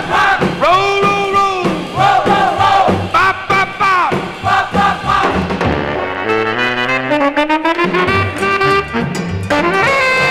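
Instrumental break of a 1950s big-band rock and roll record: the horns play short phrases with bent notes over a steady beat. About six seconds in a run of notes climbs upward, ending in a glide up into a held chord.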